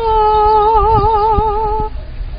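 A woman singing a Korean Buddhist hymn (chanbulga), holding one long note with steady vibrato that ends shortly before the close.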